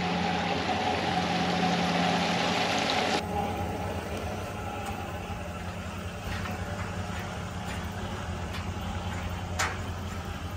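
Steady hum of wastewater clarifier machinery with a hiss of moving water. About three seconds in, the sound cuts abruptly to a quieter, lower hum, with a couple of faint knocks near the end.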